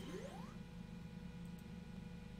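Low steady background hum, with a click at the start and a faint short rising tone in the first half second.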